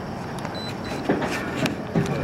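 Steady background noise with two faint, short, high beeps about half a second in and a few sharp knocks in the second half.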